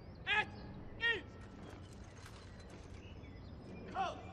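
Two short high-pitched voice calls, each falling in pitch, about a second apart, over a low background murmur with faint scattered clicks.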